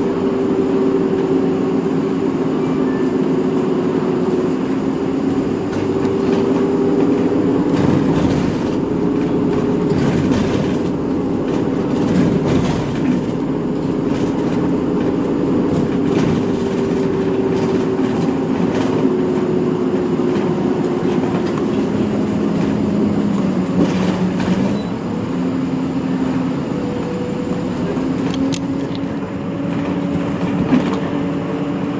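Interior running noise of an Isuzu Erga Mio city bus under way: the diesel engine and drivetrain hum, with a whine that shifts in pitch as the bus changes speed. The whine dips and then climbs again a little past two-thirds of the way through, and there are a few rattles and knocks from the body.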